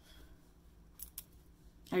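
Makeup brush bristles sweeping across the skin close to the microphone: a faint scratchy brushing with two short ticks about a second in.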